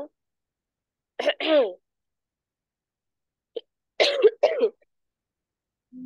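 Two brief vocal sounds through a video call, with dead silence between: a short voiced sound about a second in, and a cough about four seconds in.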